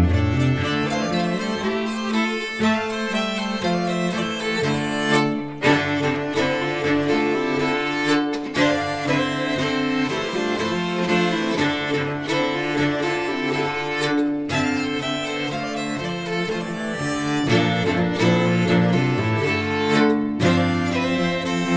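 Swedish folk polska played by an instrumental string trio, a fiddle carrying the melody over other bowed strings. The music runs continuously with no singing.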